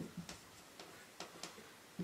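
Dry-erase marker writing on a whiteboard: a quick, uneven run of faint short ticks as the pen tip strikes and lifts between letters.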